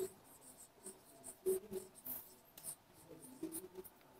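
Marker pen writing on a whiteboard: a series of short, faint squeaks and scratches, one per stroke.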